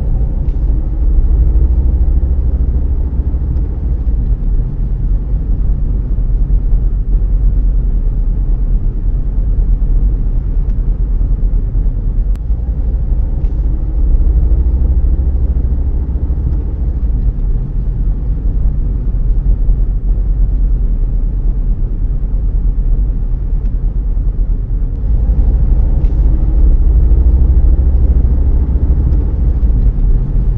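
Road and engine noise of a car heard from inside the cabin while driving: a steady low rumble of tyres and engine, with a faint engine tone that rises in pitch three times.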